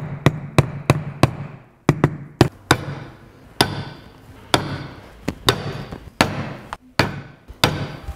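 Mallet striking stitching irons to punch stitching holes through leather. The sharp blows come about three a second at first, then more spaced and irregular.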